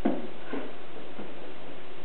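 A toddler's brief vocal sounds: a short falling noise right at the start and another about half a second later, over a steady background hiss.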